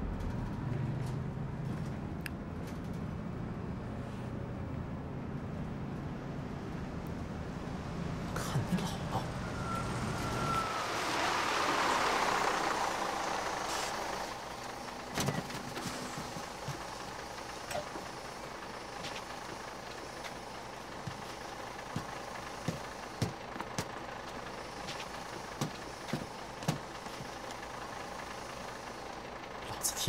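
Inside a city bus: a steady low engine drone, then about ten seconds in a loud hiss that swells for a few seconds and fades. After it comes quieter running noise with occasional light knocks and rattles.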